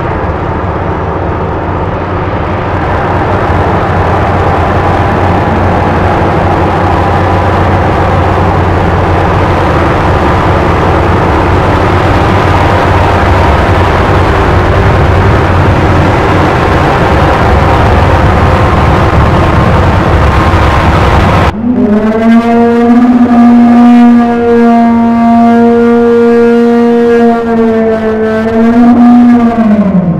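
Heavy construction machinery, diesel trucks and earthmoving equipment, running with a steady low hum. About two thirds of the way in the sound cuts abruptly to a loud, steady, horn-like tone held for about eight seconds, which sags in pitch as it stops.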